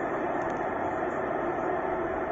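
Steady hum inside a car cabin, an even noise with a faint droning tone through it.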